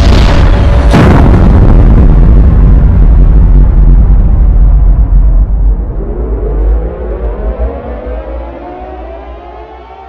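Heavy explosion sound effect: two sharp blasts about a second apart, then a long deep rumble that fades away over several seconds. Rising tones, likely music, swell in under the fading rumble.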